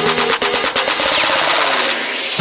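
Electronic dance-pop track retuned to 432 Hz, in an instrumental build-up without vocals. A rapid drum roll runs for about a second, then gives way to a loud noise sweep with tones sliding downward.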